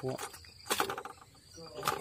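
Insects keep up a steady high-pitched chirring, broken by short bursts of a man's voice near the start, around the middle and at the end.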